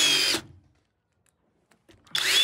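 Cordless drill driving a screw into wooden framing, with a whirring whine that falls slightly in pitch and stops about half a second in.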